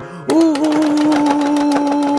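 Electronic buzzer tone from a pressed toy button, one steady flat pitch with a crackle of rapid clicks over it. It starts just after the button is smashed and cuts off suddenly.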